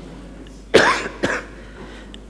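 A man coughs into a microphone: one strong cough about three-quarters of a second in, then a smaller one half a second later.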